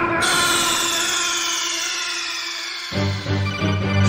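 Video game 'game over' sound effect: a held electronic chord with a high tone gliding slowly downward, which gives way about three seconds in to a low, pulsing electronic buzz.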